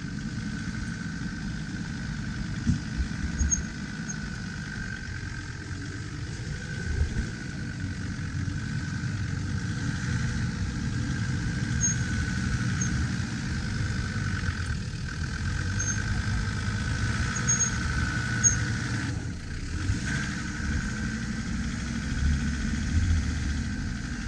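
Land Rover Discovery engine running at low revs as the 4x4 crawls slowly up a rutted track, with a steady whine over the engine note. A few short knocks come from the vehicle over the bumps.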